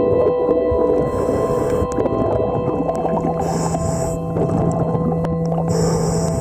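Underwater sound beside a boat hull: a diver's scuba regulator hissing with each breath, about every two seconds, over several steady droning tones and scattered small clicks.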